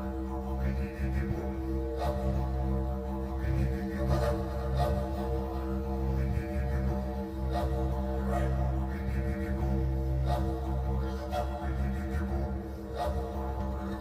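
Meditative healing music: a continuous low drone rich in steady overtones, with soft pulses about once a second.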